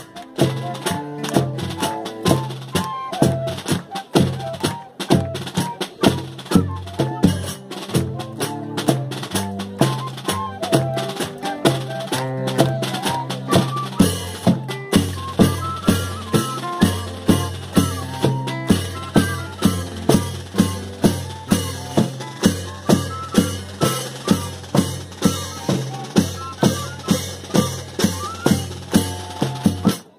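Northeastern Brazilian banda de pífanos playing: two fifes (pífanos) carry the melody over drums and clashed cymbals, with a steady beat of about two strikes a second.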